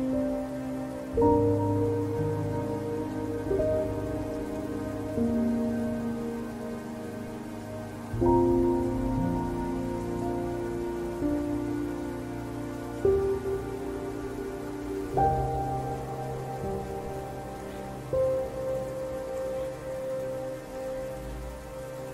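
Slow ambient background music: held chords that change every few seconds, each entering with a soft swell. A steady rain-like hiss runs underneath.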